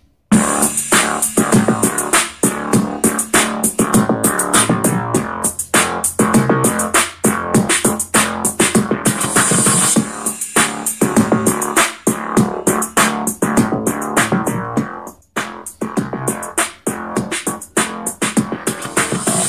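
Upbeat electronic instrumental music with a drum-machine beat and keyboards, played through a Skullcandy Air Raid portable Bluetooth speaker. It is loud and clear but without much bass. It starts abruptly just after the beginning.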